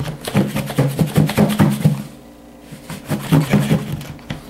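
Perch fillets and cornmeal batter being shaken inside a lidded plastic mixing bowl: a quick run of soft knocks and rattles that stops about two seconds in, then starts again.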